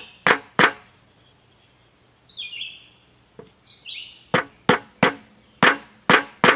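Hammer striking a block of wood on a metal sleeve, driving a new 608 ball bearing down onto a fan motor shaft: two sharp knocks, a pause, then four more. A bird chirps twice in the pause.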